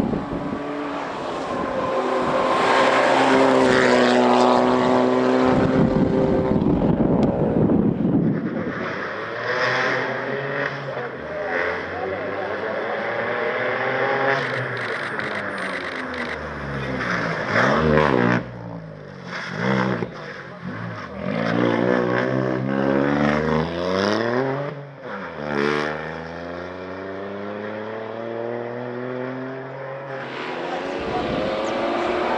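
Suzuki Swift Sport Hybrid rally cars' turbocharged four-cylinder engines revving hard on a tarmac rally stage. The pitch climbs and falls again and again with gear changes and lifts off the throttle.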